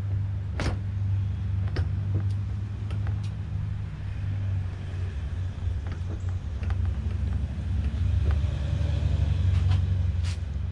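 Hard black motorcycle saddlebag knocking and clicking against its chrome mounting posts as it is pressed into place on the rear fender, the sharpest knock about half a second in and lighter clicks scattered after. A steady low rumble runs underneath.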